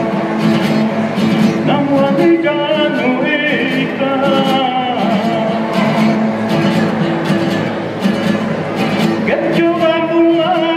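A man singing a folk song to the accompaniment of two acoustic guitars, plucked and strummed, in a steady unbroken performance.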